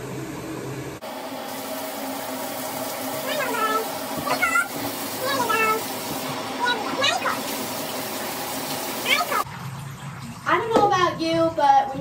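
Water running and splashing in a bathtub as a dog is washed, a steady hiss. Over it come a few short rising-and-falling pitched sounds in the middle, and a voice starts near the end.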